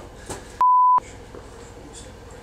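Censor bleep: one loud, steady beep a little under half a second long, with all other sound cut out while it plays, masking a word in a flubbed take.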